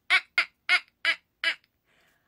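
A woman laughing in five short 'ha' bursts that come a little farther apart each time, then stop.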